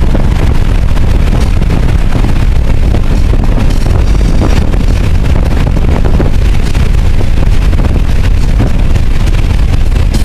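A 2000 Toyota Solara's engine and road noise, heard from inside the cabin while it is driven hard around a racetrack. The sound is a steady, heavy low rumble, recorded so loud that it is distorted, with no clear engine pitch.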